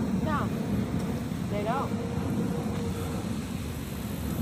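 Steady low rumble of vehicle traffic and engines, with two brief snatches of a voice, one just after the start and one near the middle.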